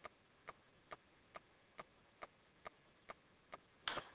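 Faint, even ticking at a little over two ticks a second, with one louder, sharper hit near the end as a golf club strikes a ball off a hitting mat.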